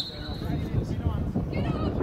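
Pitch-side football match sound with steady wind rumble on the microphone. A short, flat, high whistle sounds right at the start, and brief shouts from players come near the end.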